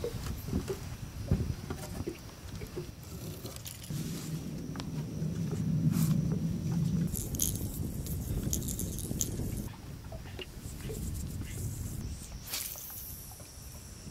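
Seasoning granules rattling in a shaker can as it is shaken over a fishing lure, with scattered clicks of handling and a low hum in the middle.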